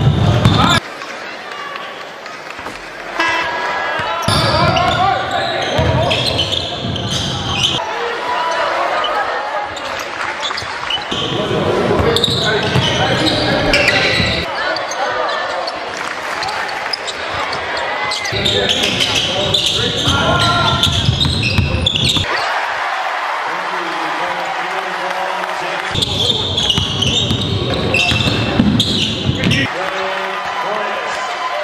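Basketball being dribbled on a hardwood gym court, with indistinct voices in a large hall. The sound changes abruptly every few seconds.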